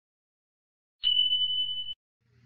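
Electronic beep sound effect: one steady high-pitched tone lasting about a second, starting about a second in and cutting off sharply.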